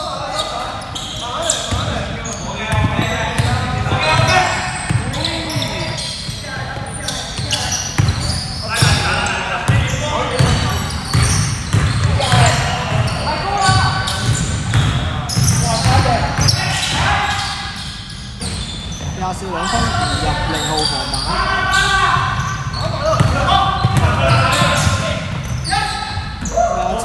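A basketball bouncing on a hardwood gym floor during live play, with players' voices calling out across a large sports hall.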